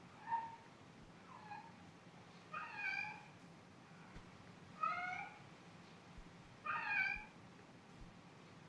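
A cat meowing five times: a short meow, a faint one, then three longer, louder meows about two seconds apart.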